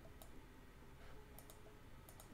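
A few faint clicks from computer controls as the on-screen window is resized, two of them in quick succession about a second and a half in, over near silence.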